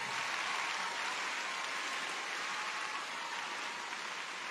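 Arena audience applauding steadily, easing off slightly toward the end.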